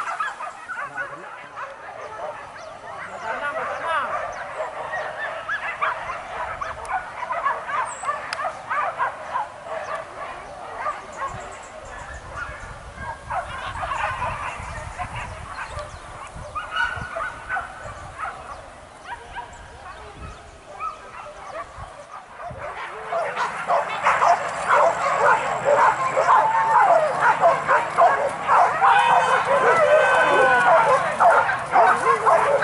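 A pack of hunting dogs barking and yelping in quick overlapping calls, growing much louder and denser about three-quarters of the way through as the dogs run in pursuit of a wild boar.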